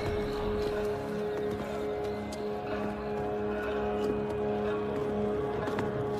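A low, ominous drone of suspense score: two sustained low tones held steady over a dark rumble, with a few faint ticks.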